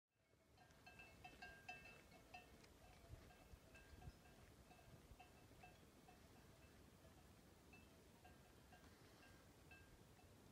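Faint, irregular clinking of several small livestock bells, busiest in the first two or three seconds and then more scattered.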